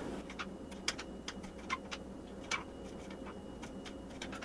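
Knife slicing peeled garlic cloves on a cutting board: a string of short, uneven clicks, about three a second, as the blade taps the board with each cut.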